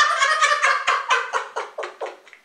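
Men laughing hard: a fast run of short 'ha' bursts, about six a second, that fades out toward the end.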